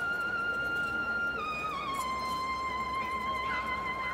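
A single wind instrument of a Spanish processional band holding a high note, then stepping down to a lower held note about one and a half seconds in, with no drums.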